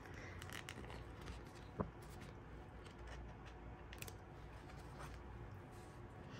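Quiet clicks and light scraping of metal tweezers picking a small sticker off its backing sheet, with one sharper tick just under two seconds in.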